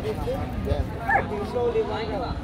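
A German shepherd dog giving short high calls, one rising about a second in and a longer steady one near the end, over people talking around the ring.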